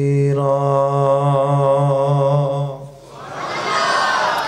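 A man's voice chanting Arabic recitation, holding one long note with a slight waver through a microphone, breaking off about three seconds in. A rush of noise follows near the end.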